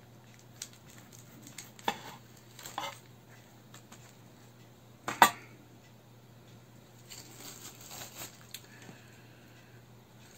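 A knife slicing English cucumber on a cutting board: a few separate knocks of the blade, the loudest about five seconds in, then softer scraping and handling noise near the end.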